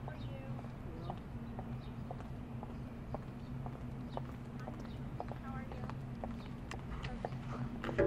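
High-heeled shoes clicking on asphalt as two people walk, sharp clicks about twice a second.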